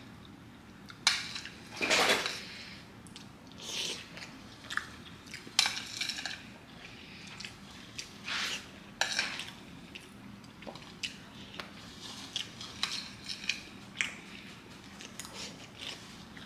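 An eating utensil clinking and scraping against a dish during a meal: irregular short clicks and brief scrapes, a few a second.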